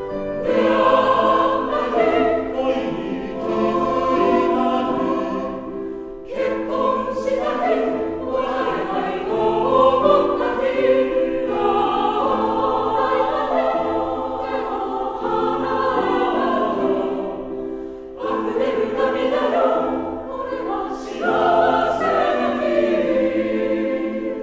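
Mixed choir of men's and women's voices singing a Japanese song in sustained, full phrases. The sound dips briefly between phrases about six seconds in and again near eighteen seconds.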